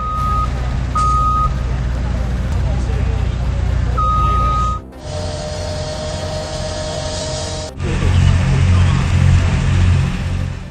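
Heavy lifting equipment (a crane and boom lifts) running with a deep engine rumble, and a high warning alarm beeping three times in the first five seconds. The sound breaks off sharply about five seconds in, gives way to a steady hum, then a louder low rumble near the end.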